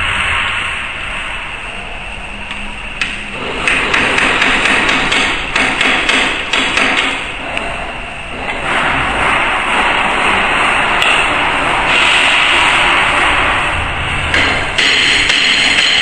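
Metal hammer knocks and clinks on the turret of a ZP9 rotary tablet press as its dies and punches are fitted, in a quick run of strikes a few seconds in, with scattered knocks later.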